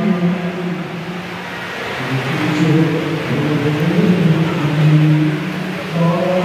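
A man's voice through a microphone and loudspeaker chanting long, held notes, starting about two seconds in after a short stretch of room noise.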